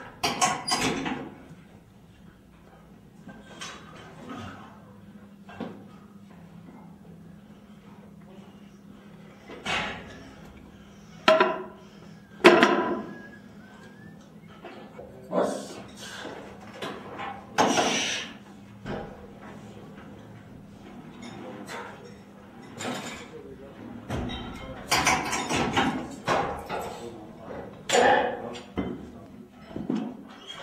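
A lifter's short, loud grunts and forced breaths of effort, about ten of them at irregular intervals, during a heavy set of reverse hack squats on a plate-loaded machine. A low steady hum runs under most of it and stops about four-fifths of the way through.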